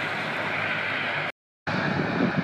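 Steady rushing outdoor noise with no distinct events. It cuts to dead silence for about a third of a second a little past halfway, then resumes.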